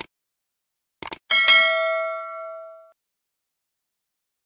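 Subscribe-animation sound effect: a click, then two quick clicks about a second in, followed by a notification bell ding that rings on and fades over about a second and a half.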